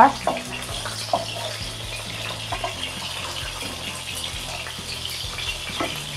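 Rohu fish steaks sizzling steadily as they shallow-fry in oil in a nonstick pan, with a few light taps and scrapes of a wooden spatula as the pieces are turned.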